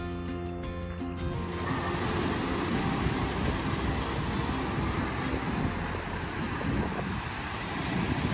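Music that gives way after about a second and a half to a steady rushing noise.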